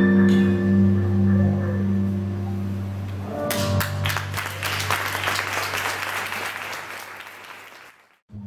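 A jazz quartet's closing chord held and ringing out, low notes from the electric bass and keyboard sustained, then audience applause breaks in about halfway through and fades away near the end.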